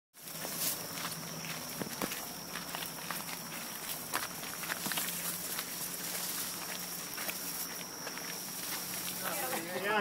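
Footsteps and rustling handling noise from someone climbing the Haiku Stairs' steel steps in the dark, as a run of irregular clicks and scuffs. A steady high-pitched tone runs underneath throughout.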